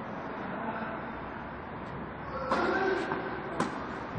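A single sharp tennis racket-on-ball strike near the end, over a steady background hiss, with a short stretch of voice a little past halfway.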